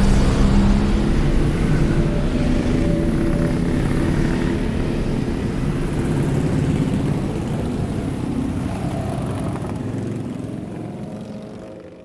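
A group of motorcycles cruising together on a highway, their engines running in a steady mixed hum that fades out near the end.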